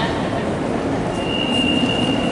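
Metro train running through the underground station, a steady rumbling noise with a single high-pitched squeal that starts about a second in and holds steady.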